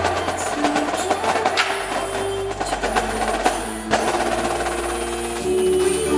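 Indoor drumline and front ensemble playing: rapid marching snare and tenor drum strokes over marimba and sustained low bass notes. The music swells louder and fuller about five and a half seconds in.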